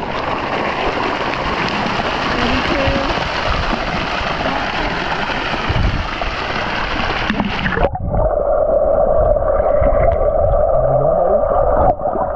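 Pool water sloshing and splashing right at a waterproof action camera's microphone. About eight seconds in, the camera goes underwater, and the sound suddenly turns muffled, with a steady hum.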